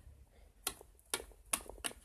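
A small plastic toy pet figure tapped on a hard tabletop as it is walked along: four light taps, roughly half a second apart.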